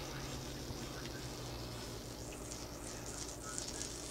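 Steady faint hiss from a nine-tip HHO (oxyhydrogen) multi-burner running at about 90 watts under a stainless steel plate of water, over a low steady hum.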